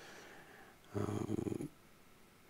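A man's short, low, gravelly vocal sound about a second in, lasting under a second, between long pauses in speech.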